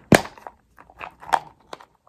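Plastic flip-top lid of an Extra Refreshers gum container snapping open with one sharp click, followed by a few fainter clicks and taps as the container is handled.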